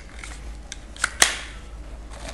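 Sharp plastic clicks from a knife being handled in its Kydex sheath, with two close together about a second in, the second one the loudest.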